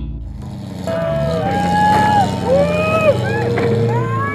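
Several off-road competition car engines revving, each rising, holding and dropping back, overlapping one another.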